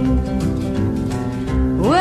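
Acoustic guitar playing a song accompaniment between sung lines, with a singer's voice sliding up into a note near the end.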